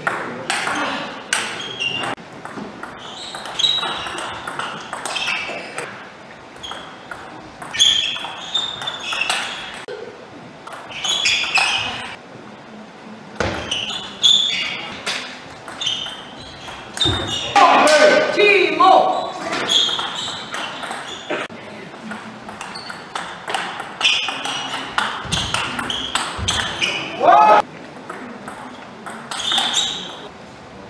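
Table tennis rallies: the ball clicks sharply off the rubber-faced paddles and the table in quick back-and-forth exchanges. Voices and shouts come between points, loudest a little past halfway and again near the end.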